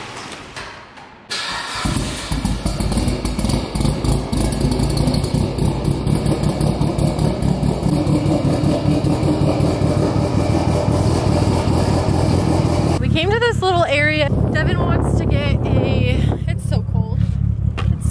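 Mitsubishi Lancer Evolution VIII's turbocharged 2.0-litre four-cylinder cold-starting a little over a second in, then idling steadily.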